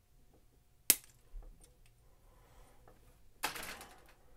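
Hobby nippers (sprue cutters) snipping a part off a plastic model-kit runner: one sharp, loud snap about a second in. A second, longer, scratchier sound follows near the end.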